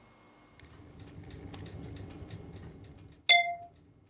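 Rustling handling noise with scattered small clicks, then, a little over three seconds in, a single sharp clink of glass or metal that rings briefly and dies away.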